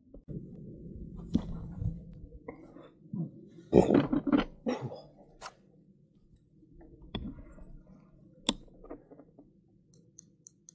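Handling noise from a bicycle and a handheld camera being moved about: rustling and scattered knocks, loudest in a cluster of knocks about four seconds in, with a single sharp click near the end.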